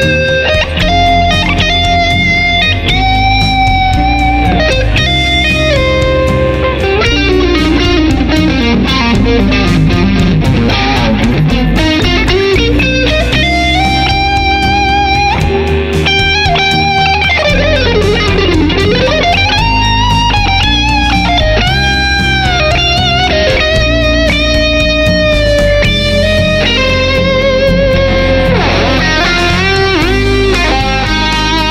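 Vola electric guitar played through an amp with a 2 mm Hawk pick: improvised lead lines of note runs and long sustained notes with vibrato. Several times the pitch swoops deep down and back up.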